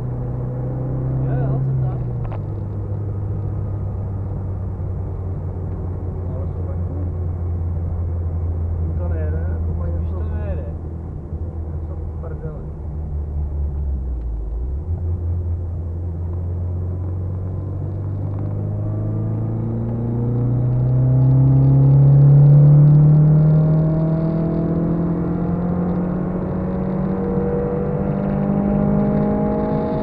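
Car engine heard from inside the cabin during a track session, holding a steady note through a long corner. It then rises steadily in pitch over the second half as the car accelerates out onto the straight.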